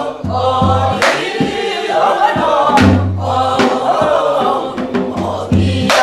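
A woman singing a Korean Namdo folk song solo, accompanied by a few strokes on a buk barrel drum, the two strongest about a second in and near three seconds in.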